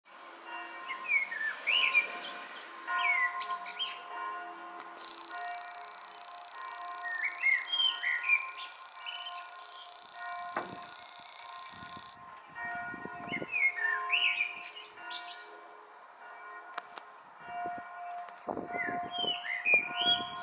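A songbird singing short whistled phrases, one every few seconds, over the steady hum of distant church bells ringing.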